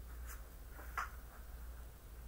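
Faint handling and rustling of large paper sheets, with soft brief sounds about a third of a second in and about a second in, over a low steady hum.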